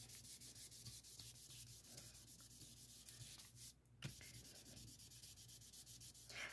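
Faint rubbing of a cotton pad working mineral oil into a sheet of inkjet-printed paper, with a brief pause a little before four seconds in.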